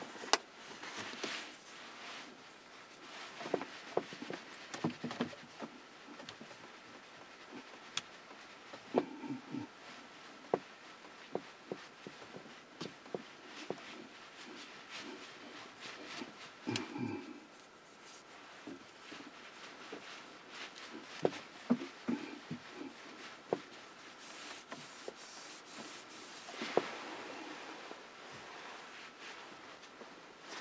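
Quiet car cabin with scattered light clicks and taps and brief rustles of someone shifting and handling things.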